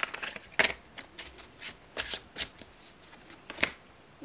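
A tarot deck being shuffled in the hands: a string of irregular card clicks, with a few louder ones near the middle and just before the end.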